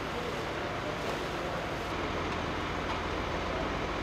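Steady running noise. From about two seconds in, a fire truck's diesel engine idles underneath it with a low, even drone.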